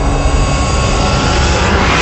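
Logo-reveal sound effect: a loud rushing noise over a deep rumble, growing brighter and building toward the end.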